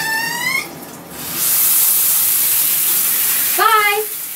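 Shower spray running, a steady hiss that starts about a second and a half in, with a girl's short high-pitched cries at the start and again near the end.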